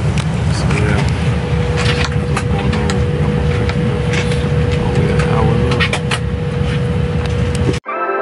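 Airliner cabin noise while the plane moves on the ground: a steady low rumble with a constant whine, light clicks and faint voices. Near the end it cuts off suddenly and keyboard music begins.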